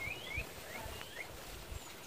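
Faint bird chirps: a quick run of short, high, sliding notes in the first second, fading out after that.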